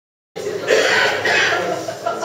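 A person's voice: two short, loud, breathy bursts, the first a little under a second in and the second about half a second later, starting abruptly from silence.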